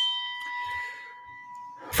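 A single bell-like chime ringing out with one clear pitched tone and fading away over about two seconds.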